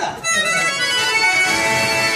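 A harmonium playing steady held notes, the accompanying interlude to a sung Telugu padyam, just as a singer's phrase ends at the start.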